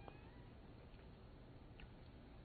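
Near silence: faint room hiss, with a few faint, brief high sounds at the start and about a second in.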